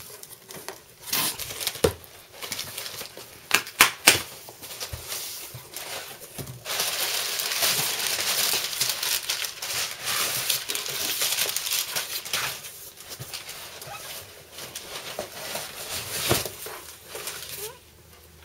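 Cardboard shipping box being opened by hand: flaps pulled back with a few sharp knocks and scrapes in the first seconds, then a long stretch of crumpling packing paper as it is pulled out, fading to softer rustling.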